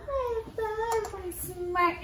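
A toddler's high, drawn-out sing-song vocalizing: long held notes, each sliding down in pitch, one after another.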